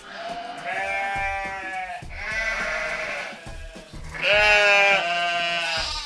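Sheep bleating sound effect dubbed over the talk to mask what is said: three long, wavering bleats, one after another.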